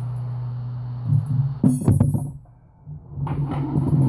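A steady low electric hum that stops about a second in, followed by irregular clattering and scraping as small tools and pieces are handled on the workbench.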